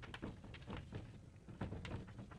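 Quiet room background with faint scattered clicks and rustles.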